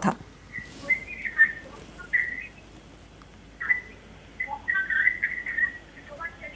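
Faint, scattered chirping and warbling blips coming over a telephone line, with no clear words. The sound is muffled and thin, as a phone line makes it.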